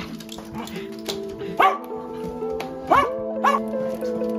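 A dog giving three short barks, the first about one and a half seconds in and two close together near three seconds, over background music with sustained notes.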